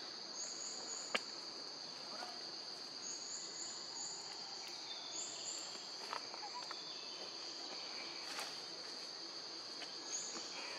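Steady, high-pitched drone of an insect chorus, with a sharp click about a second in and a few fainter clicks later.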